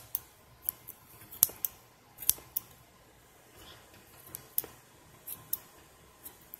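Small scissors snipping through a fashion doll's hair: a dozen or so sharp, irregular snips, with a short pause about halfway through.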